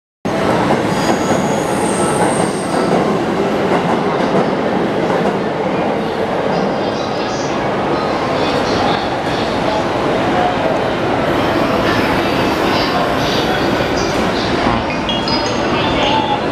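Loud, steady rumble of a busy railway platform dominated by train noise. Near the end, a JR East E233-1000 series electric train begins to pull away from the platform.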